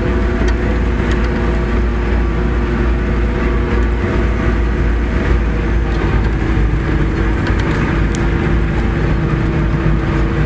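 Forage harvester chopping corn, heard from inside the cab: a steady, unbroken machine drone with a constant hum, and a few faint ticks.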